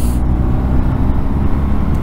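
BMW R 1250 GS boxer-twin engine running steadily on the move, a low drone mixed with wind and road noise.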